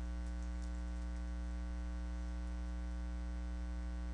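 Steady electrical mains hum with a stack of evenly spaced overtones, unchanging throughout, with a few faint clicks above it.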